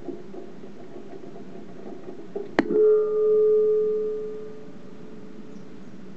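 Onboard camera audio from an amateur high-altitude rocket: a steady low rush, then a single sharp snap about two and a half seconds in, followed by a clear metallic ringing of the airframe that fades over about two seconds. The snap comes as a finned part separates from the rocket.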